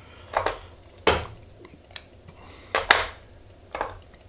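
Handling noises as vinyl D-rib is pulled off a clear plastic spool and cut with scissors: about five short scuffing and clicking sounds, one sharp click near the middle.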